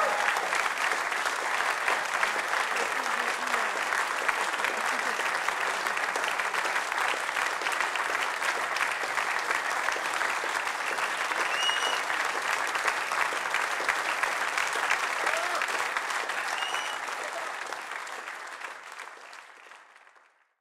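Concert audience applauding steadily, a dense crackle of many hands clapping, with two brief high tones rising above it. The applause fades out over the last few seconds.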